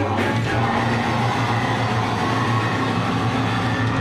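Heavy rock band playing live at loud volume: distorted guitars and bass over a steady held low note, in an amateur crowd recording.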